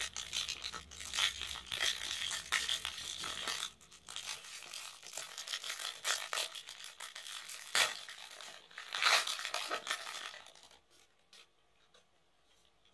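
Foil trading-card pack wrapper crinkling and being torn open by hand, a run of irregular crackling rustles that stops shortly before the end.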